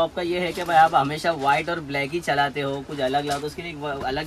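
A man talking steadily in a low voice.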